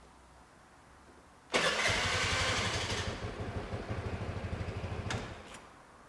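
A Vespa scooter's single-cylinder engine is started with the electric starter about a second and a half in and catches at once. It idles with an even pulse for about four seconds, then stops. The start shows that the immobilizer accepts the newly programmed key.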